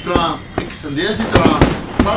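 Several sharp cracks over a man's voice, the loudest a quick cluster about one and a half seconds in.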